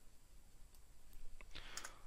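A few faint clicks from a computer during a near-quiet pause, over low room hiss.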